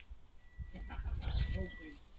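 An English Springer Spaniel puppy giving a short whining yelp that falls in pitch, lasting about a second, with a low rumble under it.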